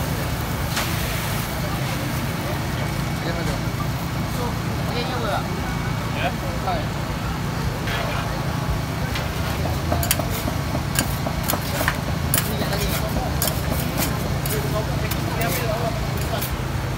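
Metal spatula clicking and scraping on a flat steel griddle, in a run of sharp ticks from about ten seconds in as egg-coated bread halves are pressed and turned. Behind it is a steady low hum and the murmur of voices.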